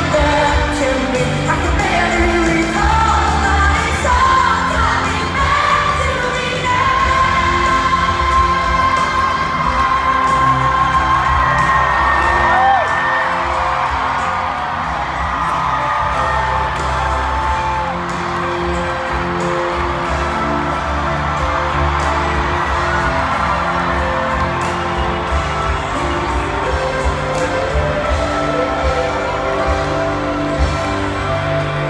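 Live arena performance of a pop power ballad: a female lead singer holds long high notes over a full band, with whoops from the crowd, heard from the upper stands.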